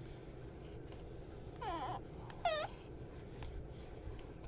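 A pet whining twice in short high-pitched calls, the first sliding down in pitch about a second and a half in, the second a moment later.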